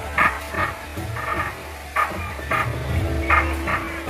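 Background music with a deep, continuous bass line and short percussive hits repeating every half second or so.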